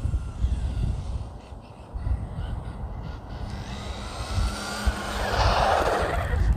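Brushed 1/10 RC stadium truck driving on asphalt on a 2S LiPo, the motor's whine and the tyre noise faint at first and growing louder over the last second or two as it comes near. A low, uneven rumble runs under it throughout.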